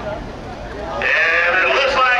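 People's voices, then a loud, high-pitched raised voice that comes in about a second in.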